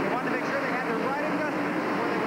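A pack of NASCAR Busch Grand National V8 stock cars running together at a restart: a steady engine drone heard through a TV broadcast, with a voice talking over it.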